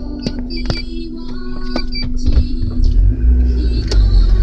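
Mitsubishi Lancer driving, heard from inside the cabin: a low engine and road rumble that grows stronger in the second half, with scattered sharp clicks and rattles.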